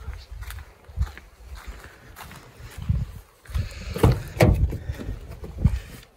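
Handling rumble and rustling as gear and a hand-held phone are moved around the back of an SUV. There are several knocks, the loudest two a little past halfway.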